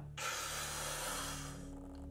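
A man taking one long, deep breath in, a breathy rush of air that stops about a second and a half in as he fills his lungs before holding his breath.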